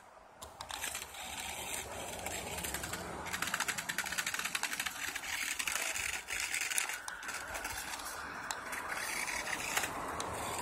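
RC car with screw-spiked tires driving and pushing snow with its plow: a fast, dense clicking that starts about a second in and thins out after about seven seconds.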